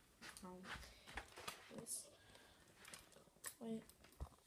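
Near quiet, with a few faint clicks and a short murmured voice sound about half a second in, then a spoken "wait" near the end.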